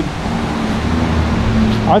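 Steady rush of water pouring over a concrete dam spillway and down rocky rapids, with a low steady hum beneath it.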